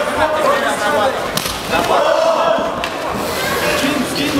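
Several voices shouting excitedly over one another, with a single sharp thud about a second and a half in: a blow landing on a downed fighter in a bout that ends by knockout.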